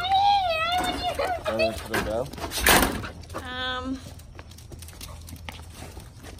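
Excited adult Goldendoodles whining while jumping up: a high whine that rises and falls at the start, a single short harsh bark just before the middle, then a steadier whine about three and a half seconds in.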